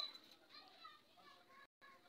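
Near silence with faint distant children's voices. At the very start the last ring of a steel tumbler, blown off a calcium carbide bottle, fades out.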